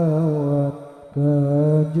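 A solo male voice sings a sholawat line without accompaniment through a sound system. He holds long notes, bends them in melismatic ornaments and pauses briefly for breath about halfway through.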